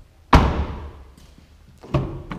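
Car door of a 2015 Chevrolet Malibu slammed shut: one loud thud with a short ringing tail. Near the end comes a sharper click as the front door handle is pulled and the latch releases.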